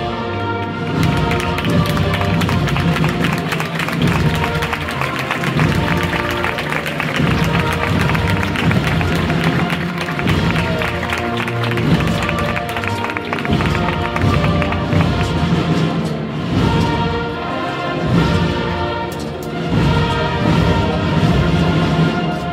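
A Spanish banda de música (brass, woodwinds and drums) playing a processional march in held chords over a steady drum beat.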